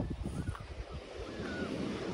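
Wind buffeting the microphone in an uneven low rumble, with a few faint short bird chirps above it.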